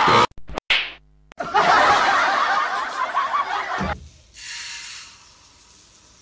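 Laughter for about two and a half seconds, after a short burst of sound and a brief pause. A quieter hissing noise follows about a second later.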